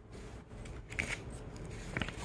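Printed paper sheets being handled and turned over, a soft rustle with short sharp crackles about a second in and near the end.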